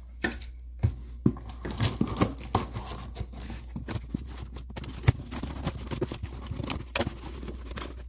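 Scissors snipping and slicing through packing tape on a cardboard shipping box, with irregular scratching and clicks as the cardboard flaps are worked open. One sharp knock about five seconds in.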